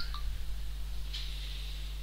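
Steady low hum with a faint hiss, the recording's constant background noise, and no other sound event.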